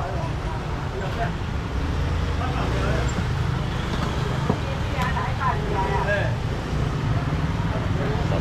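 Busy market-stall ambience: a steady low rumble under background voices, with a single sharp knock of a knife on a cutting board about halfway through as a fish is cut.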